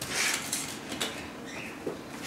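Scratching and rustling of gelled hair and a hairnet as a large V-shaped bun pin is pushed into a ballet bun, with a couple of small clicks about half a second and a second in.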